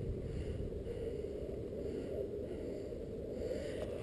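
Quiet, steady low rumble of outdoor background noise, with no distinct events.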